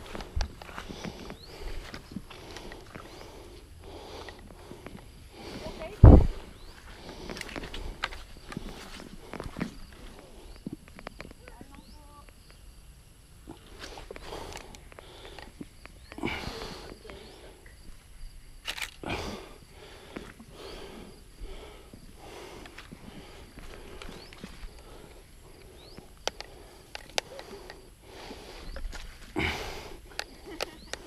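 Footsteps through grass and knocks from a handheld action camera, irregular throughout, with one loud knock about six seconds in.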